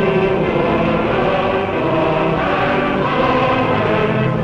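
A choir singing sustained chords as part of a film score.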